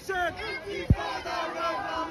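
A crowd of marching protesters chanting and shouting together, several voices holding the same pitches. A single sharp thump cuts through about a second in.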